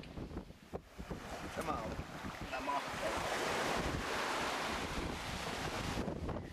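Wind buffeting the microphone, a rumbling rush that grows louder and steadier from about two seconds in. Brief faint voice sounds come through early on.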